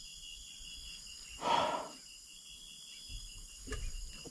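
One short, breathy exhale about a second and a half in, over a faint, steady insect chirping in the background.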